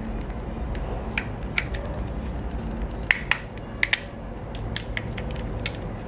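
Sharp plastic clicks and knocks as a Xiaomi handheld air pump's casing and internal parts are handled and worked apart by hand, about ten irregular clicks with the loudest a little past the middle.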